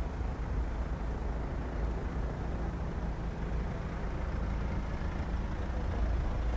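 Mercedes-Benz hearse's engine running as it creeps past at a procession's walking pace: a steady low rumble that grows slightly louder near the end as the car comes close.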